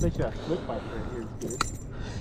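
Light metallic clinking of a spinnerbait's blade and wire as it is unhooked by hand from a bass's mouth, with a couple of sharp clicks about one and a half seconds in.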